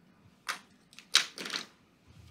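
A few short, scratchy strokes of a dry-erase marker on a whiteboard, the loudest a little over a second in.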